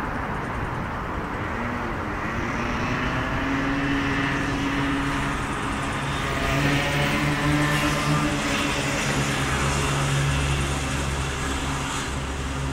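City street traffic: passing cars with a steady engine hum that grows louder in the second half as vehicles pass close by.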